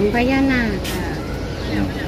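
A person speaking Thai over a steady low background rumble.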